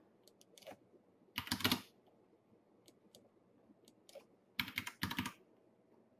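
Computer keyboard typing in short, scattered bursts of keystrokes, the loudest groups about a second and a half in and around five seconds in.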